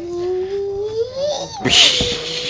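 A toddler's long, drawn-out wordless vocal sound, like a cat's meow. It dips in pitch and then rises, followed near the end by a short breathy hiss.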